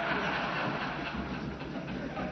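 Indistinct murmur of many members talking at once in a large parliamentary chamber, steady and blurred together, over a low rumble.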